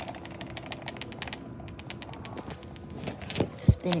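Bop It toy spinning on a concrete floor, its plastic body ticking against the floor in quick, irregular clicks. A single heavy thump comes near the end.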